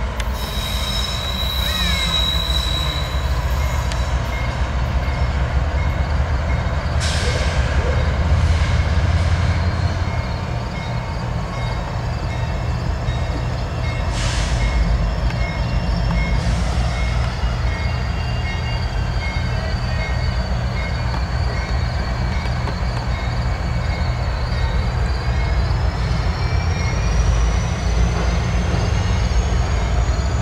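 CSX freight diesel locomotives running close by with a steady low rumble, while a loaded autorack train slows to a stop with high wheel and brake squeal. A long squeal that wavers and slowly rises in pitch runs through the second half.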